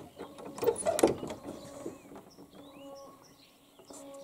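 Knocks and clicks of the pigeon loft's wooden door being shut and fastened, packed into the first second or so. After that, small birds chirp faintly.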